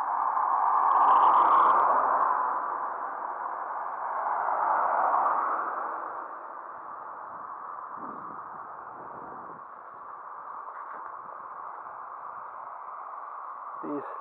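Road traffic: a car passing on the road, its noise swelling about a second in and fading, a second swell around five seconds, then a steady outdoor hiss.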